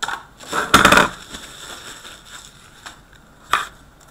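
Foil trading-card pack wrappers crinkling as a pack is pulled from a stack: a loud burst of crinkling about a second in, and a short crackle near the end.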